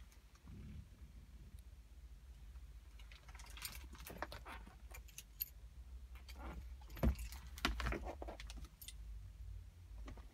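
Keys jingling in a hand, with scattered light clicks and rattles and a couple of louder knocks about seven and eight seconds in.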